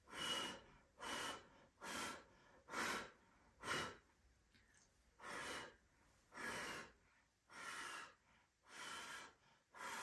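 A person blowing short puffs of air by mouth onto wet pouring paint to push it across the canvas toward the edge. There are about ten breathy puffs, quick and close together over the first few seconds, then slower and a little longer.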